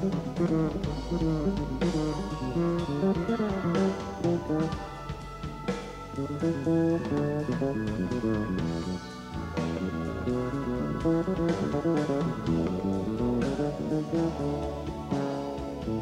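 Live band playing an instrumental passage on electric guitar, bass guitar, keyboards and drum kit, with fast-moving melodic runs over a steady drum beat.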